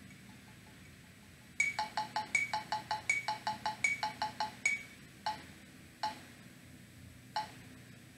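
Electronic metronome beeping very fast, about five beeps a second with a higher-pitched accent on every fourth beep; after a few seconds it stops, and a few widely spaced single beeps follow as its tempo is turned down.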